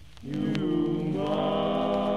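A male vocal quartet singing a slow song in close harmony. The voices pause briefly, come back in on a held chord, and move to a new chord about a second in.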